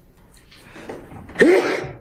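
A person sneezing once: a short breathy build-up, then a loud sneeze about a second and a half in.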